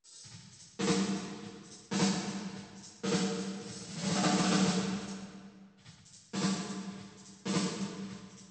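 Snare drum hits played through an emulated Lexicon 224 digital reverb, about five strikes a second or more apart, each trailing off in a long reverb tail. The plug-in's decay optimization is on and being stepped up, shaping how the tail rings after each hit.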